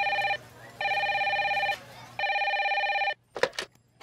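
Desk telephone ringing with a trilling electronic ring, three rings of about a second each with short gaps. The ringing stops and a few clicks follow near the end as the handset is picked up.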